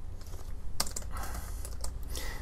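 Typing on a computer keyboard: a handful of separate key presses, the sharpest a little under a second in, as code is typed and a code-completion shortcut is pressed.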